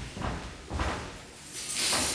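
Footsteps on a wooden floor, then a cloth towel rustling as it is picked up and pulled out near the end.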